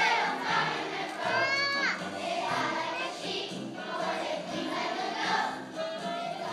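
A large group of young children singing together as a choir, with music. About a second and a half in, one nearer voice slides down in pitch.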